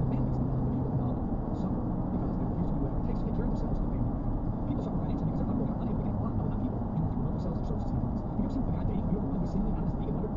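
Steady road and tyre noise of a car at highway speed, heard from inside the cabin. A low hum fades out about a second in.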